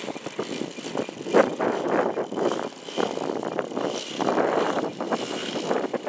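Engine and 19x8 propeller of a 3D Hobby Shop Extra 330LT radio-controlled aerobatic model plane running at low throttle as it taxis on grass, the sound rising and falling unevenly.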